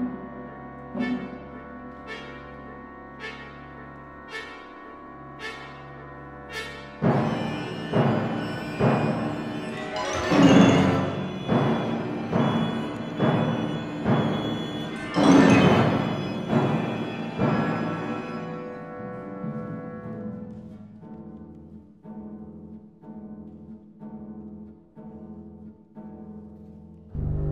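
Symphony orchestra playing modern classical music: a held chord with soft regular strokes about once a second, then the full orchestra comes in loudly about seven seconds in with heavy repeated strokes. It peaks twice, then dies away to quieter, evenly spaced strokes.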